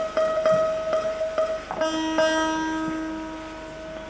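Solo bağlama (long-necked Turkish saz) played live. It opens with quick repeated plucks on one note, about four a second. About two seconds in, a lower note is struck and left to ring out, slowly fading.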